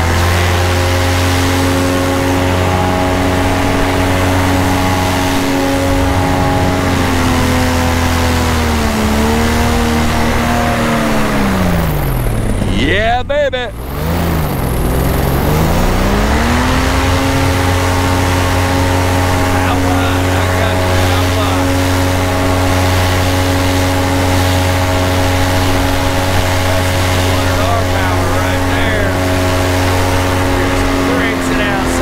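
Flat Top paramotor's two-stroke engine and propeller running steadily at cruise throttle. Near the middle the pitch sinks as the throttle is eased off, then rises back to the same steady cruise pitch a few seconds later.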